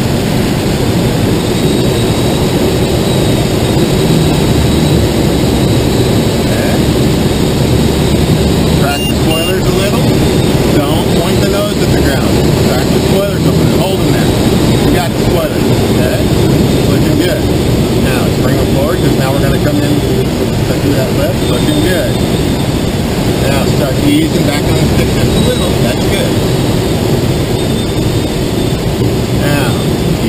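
Steady loud rush of air over an engineless glider's canopy and fuselage as it descends on the landing approach with the spoilers in use, heard from inside the cockpit.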